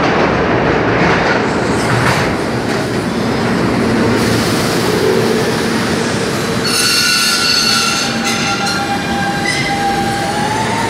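R160 subway trains running through an underground station, the wheels and cars making a loud, steady rumble. About seven seconds in, a set of thin, high, steady whining and squealing tones joins the rumble.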